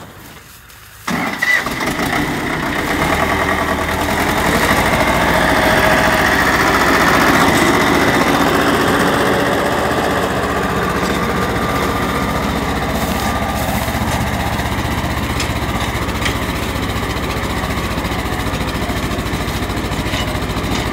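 Two-cylinder tractor diesel engine starting about a second in, running up over the next few seconds and then working steadily as it pulls a plough through the field.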